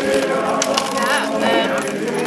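A Belgian draft horse walking on asphalt, its shod hooves clip-clopping and its harness and trace chains jingling, with voices in the background.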